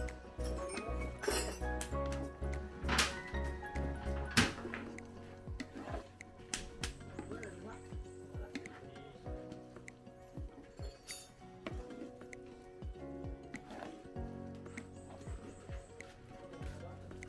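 Background music, its heavy bass dropping out about four seconds in, over scattered clinks and knocks of a wooden spatula striking and scraping a large metal wok as noodles are stirred.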